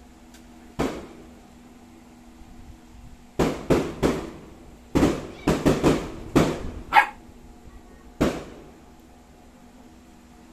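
Firecrackers and fireworks going off in a string of sharp bangs, each with a short echoing tail. There is one bang about a second in, then a quick irregular run of about nine between three and seven seconds, then one more near eight seconds.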